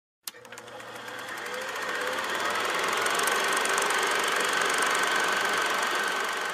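Film projector running: a rapid, even mechanical clatter over hiss. It starts with a click and fades in over the first couple of seconds, then holds steady.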